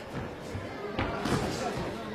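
Boxing-arena background sound with a single sharp thud about a second in from the exchange in the ring.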